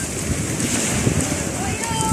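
Wind buffeting the microphone: an irregular low rumble with hiss, and faint voices behind it.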